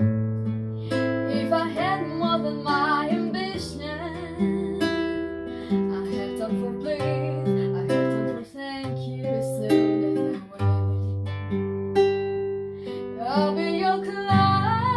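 Acoustic guitar played with picked chords over a changing bass line. A woman's singing voice comes in about a second in and again near the end.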